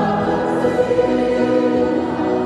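A congregation singing a hymn together with organ accompaniment, holding sustained chords that change every half second or so.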